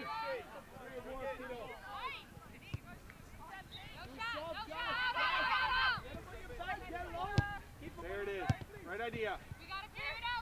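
Voices of players and spectators calling out across a soccer field, too far off to make out, with a loud shout about five seconds in. Two sharp knocks come about a second apart in the second half.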